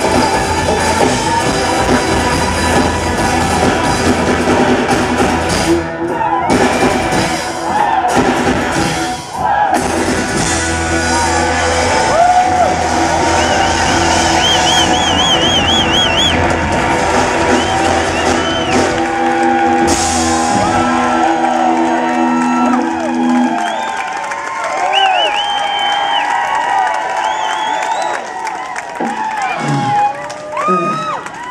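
Live rock band of acoustic guitars, bass and drums playing the close of a song, with a few short stop-time breaks early on. The music ends about two-thirds of the way through and the crowd cheers and whoops.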